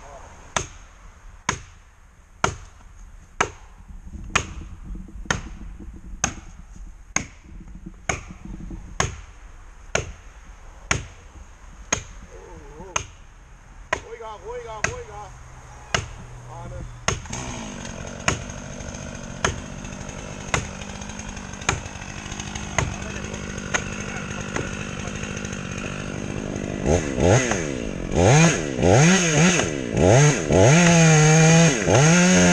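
A felling wedge is driven into the cut at the base of a tree with steady, sharp blows, about one a second, to wedge the trunk over. About halfway through a chainsaw starts idling underneath, and near the end it is revved up and down.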